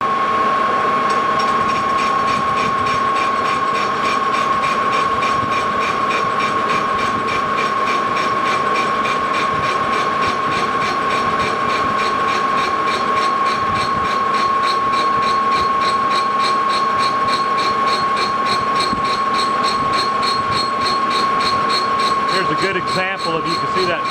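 Metal lathe boring the hub of a cast iron pulley: the boring bar cuts with a steady high-pitched ring and a quick regular pulsing. The cut is uneven over patches of rough casting, and the bar's tip is flexing.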